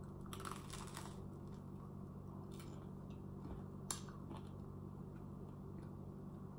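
Biting into and chewing toasted bread with avocado: a few soft crunches in the first second, then scattered fainter crunches and a sharper click about four seconds in, over a steady low hum.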